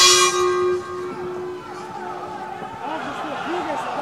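A single strike of the ring bell signalling the start of the next round, ringing out and fading over about two and a half seconds. Crowd noise in the arena swells after it, growing louder near the end.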